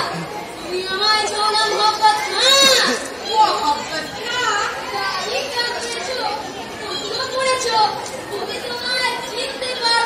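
Voices speaking stage dialogue in a large hall, with audience chatter underneath.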